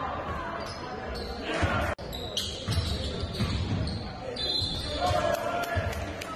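Basketball game sound in a gym: a ball bouncing on the hardwood court among players' indistinct shouts, echoing in the hall. There is a brief dropout about two seconds in.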